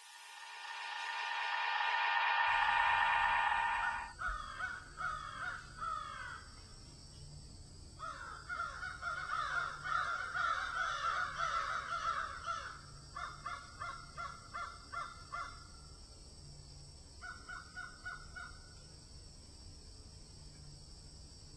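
A sustained musical chord swells up and cuts off about four seconds in; then crows caw in several runs of quick repeated calls, over a faint steady hum.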